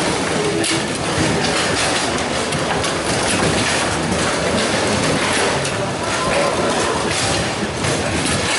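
Table football in play: a dense, steady clatter of clacks and knocks from the ball striking the figures and the rods banging.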